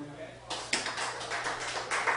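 The looped bowed fiddle note dies away. About half a second later comes a run of irregular sharp taps and clatter.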